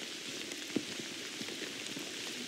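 Light rain falling on forest foliage and rain gear: a steady soft hiss with a few faint drop ticks.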